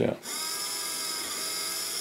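Rigel Systems nFOCUS DC focus motor, geared to the knob of a GSO dual-speed focuser, running in high-speed mode: a steady small-motor whine that starts about a quarter of a second in.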